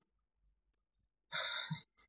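A woman's sigh: one breathy exhale of about half a second, coming after about a second of quiet.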